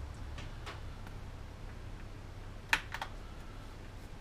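A few light clicks and taps from hands handling the plastic body of a DJI Phantom 2 quadcopter, the loudest a sharp click a little under three seconds in.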